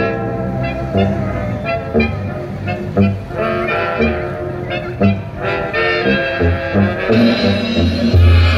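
Latin dance music with a brass section playing over a steady beat.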